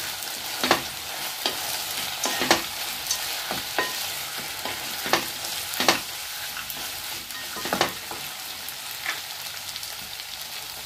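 Sago pearl khichdi frying in oil in a pot while a wooden spatula stirs it: a steady sizzling hiss with irregular scrapes and taps of the spatula against the pot.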